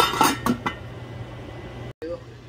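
Enamel pot lid being set down onto an enamel cooking pot, clinking and rattling about four times in the first second, then settling.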